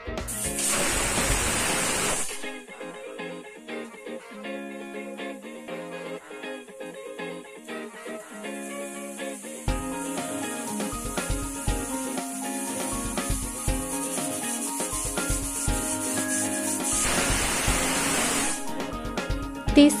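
Stovetop pressure cooker whistling: the weight lifts and steam jets out with a loud hiss for about two seconds just after the start, and again near the end. This is the whistle that marks the cooker at full pressure as the tomatoes cook. Instrumental background music plays under and between the whistles.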